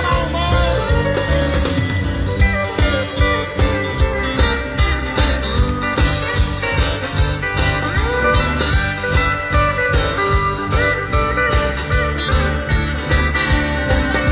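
Country music played by a band: a guitar lead with bent notes over bass and a steady drum beat, with no singing.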